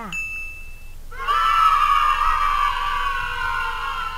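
A short ding, then a stock sound effect of a group of children cheering for about three seconds, falling slightly in pitch, marking a correct answer in a children's lesson.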